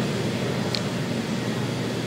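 Steady rushing background noise with a faint low hum, and one short tick about three quarters of a second in.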